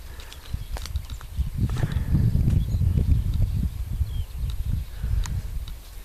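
Wind buffeting the microphone: a low, irregular rumble that swells and fades, with a few faint clicks.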